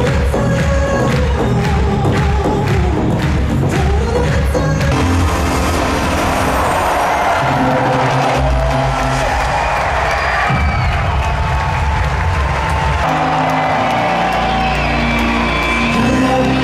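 Live pop music over an arena sound system, heard from the audience, with the crowd cheering. The music changes about five seconds in, and a new song with a heavy bass line starts about thirteen seconds in.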